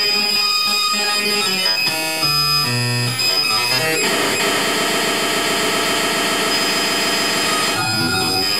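Live electronic noise music played on analog and electronic devices through effect units. Tones jump between pitches over a steady high whine, then about halfway through give way to a dense, harsh buzzing drone that breaks off near the end.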